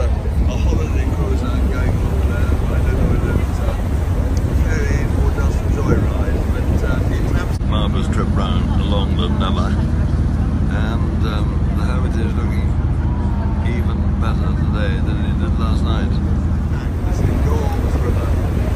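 Steady low rumble of wind on the microphone and a tour boat's engine on an open top deck, with passengers talking in the background. From about eight seconds in, a steadier engine hum comes through.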